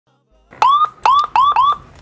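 Police car siren giving four quick rising chirps, each a short upward whoop: the signal for a driver to pull over.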